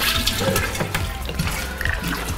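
Mango punch pouring in a heavy stream from an upended gallon plastic jug into a glass drink dispenser that is already part-filled with liquid.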